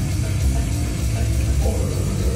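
A heavy metal band playing live: distorted electric guitar and bass over a drum kit, loud and dense throughout.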